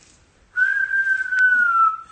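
A single high, steady whistle-like note, starting about half a second in and held for about a second and a half, dipping slightly in pitch as it ends. A short click sounds near the end.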